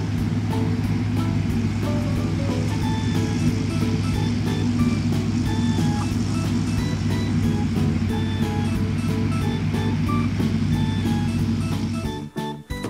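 Steady engine rumble sound effect of a toy Volvo road roller, played by its electronics while its cab is pressed down, with light background music over it. The rumble stops abruptly at the end.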